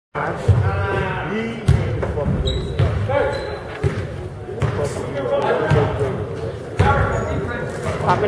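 Basketball bouncing on a hardwood gym floor at irregular intervals, echoing in a large gymnasium, with voices calling out over it.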